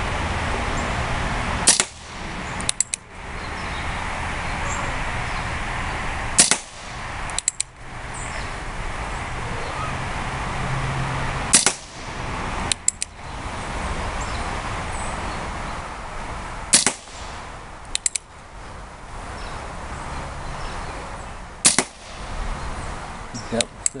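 Remington Model 1875 single-action CO2 air revolver firing wadcutter pellets: five sharp shots about five seconds apart, each followed about a second later by a quick double click of the hammer being cocked for the next shot.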